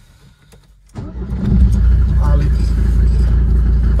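High-mileage Mercedes diesel engine starting about a second in after its glow plugs have been warmed. It catches within about half a second and settles into a loud, steady low idle. This is a cold start after the car has stood unused for weeks.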